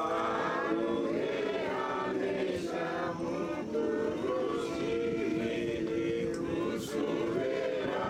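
A group of voices singing together in chorus, with the same phrases held and repeated.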